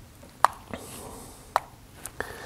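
Two short, sharp clicks about a second apart, with a fainter one between them, over faint room noise.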